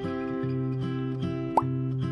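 Background music with plucked guitar and a steady beat. About a second and a half in, one short rising pop sounds over it.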